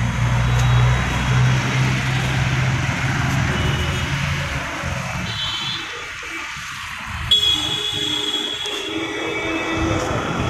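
Street noise with a low, steady engine hum through the first half, then thin high-pitched tones joining from about seven seconds in.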